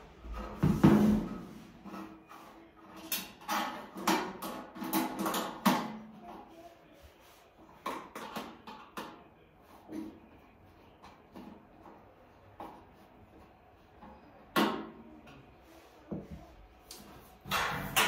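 Handling noise of a thin stainless steel griddle hood as its handle is screwed on with a screwdriver: scattered clicks, taps and knocks of metal, loudest about a second in, in a cluster a few seconds later and again near the end.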